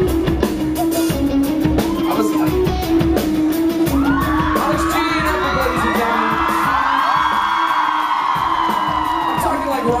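Live rock band playing a driving groove, a repeating bass riff over drums, with audience voices yelling and whooping over it, building from about four seconds in.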